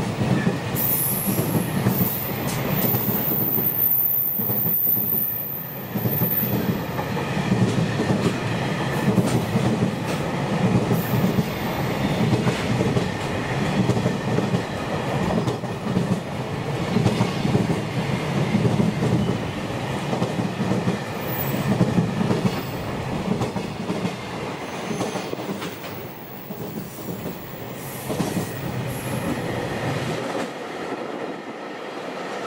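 A long container freight train rolling past close by, its wagons' wheels rumbling and clattering steadily over the track joints. A thin high wheel squeal rides over it for the first several seconds.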